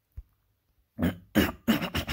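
A person coughing, three harsh coughs in quick succession starting about a second in.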